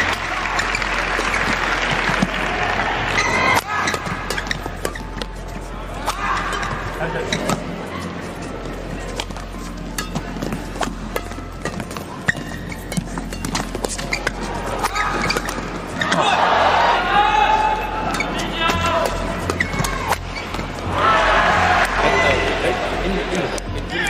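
Badminton rally: rackets striking the shuttlecock in a run of sharp hits, over steady crowd noise, with louder crowd voices and shouting near the end.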